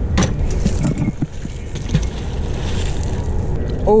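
Wind buffeting a body-worn camera's microphone, a steady low rumble, with a few light knocks and rustles of handling scattered through.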